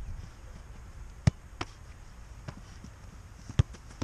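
Football thuds in a goalkeeper handling drill on artificial turf: a sharp thud of the ball being struck or caught about a second in, a smaller knock just after, and another loud thud near the end as the keeper goes down to gather the ball. A low rumble runs underneath.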